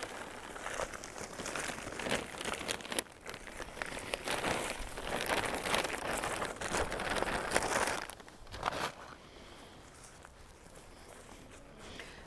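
Soil pouring from a crinkling plastic bag into a stone planter, a steady rustling hiss with small clicks. It grows louder in the middle and stops about three-quarters of the way through.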